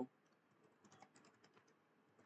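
Faint keystrokes on a computer keyboard: a quick run of light taps, starting about half a second in and lasting about a second, as the word "print" is typed.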